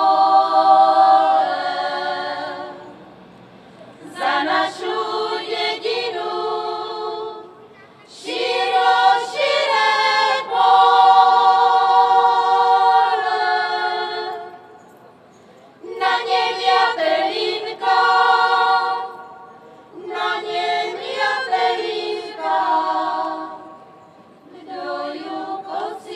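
A women's folk choir singing a cappella in several parts, in long sung phrases with short breaks between them.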